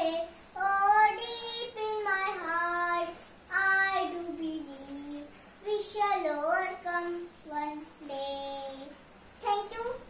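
A young girl singing unaccompanied, holding long notes of a melody with short breaks between phrases.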